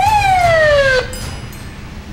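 A police car's electronic siren gives one short whoop: a quick rise in pitch, then a slower falling tone for about a second that cuts off abruptly. A low rumble continues underneath and fades out.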